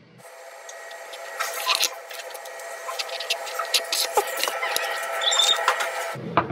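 Irregular crackling and clicking from the protective backing being peeled off double-sided tape and a small plastic enclosure being handled. Under it runs a steady hum with several pitches.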